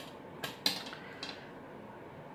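A few light clicks and rattles of seed beads in a plastic bead tray as a beading needle scoops them up, the sharpest click a little after half a second in.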